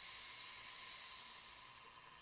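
High-voltage corona discharge from a lifter under power: a steady high-pitched hiss that fades away near the end.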